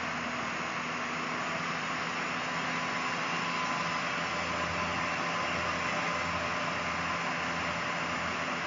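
Steady hiss with a faint low hum underneath: room tone and microphone background noise.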